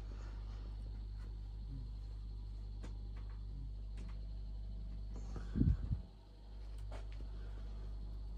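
A steady low electrical hum with a few faint clicks, and one short, louder low bump about five and a half seconds in, like a hand-held camera being handled.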